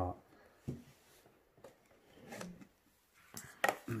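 Quiet handling noises as a small tarantula enclosure is pulled apart by hand: light scrapes and rustles, then a couple of sharp clicks near the end.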